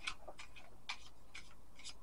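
Deck of tarot cards being hand-shuffled, a light, crisp click about twice a second as packets of cards fall from hand to hand.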